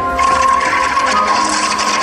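A rapid, buzzing mechanical rattle with a steady high whine, like a small machine running, starting just after the opening, over the show's music.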